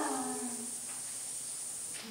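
A voice's long 'woo', imitating a train whistle, sliding down in pitch and trailing off within the first second; then only faint room hiss.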